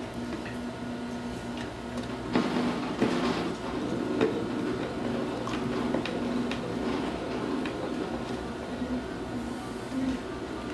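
A hand screwdriver driving a wood screw into the wooden base of a small CNC mill frame. It makes a steady scraping, creaking sound with small clicks, starting about two seconds in.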